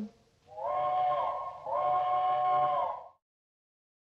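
Steam locomotive's chime whistle sounding two blasts, a short one and then a longer one, each sliding in pitch as it starts and stops.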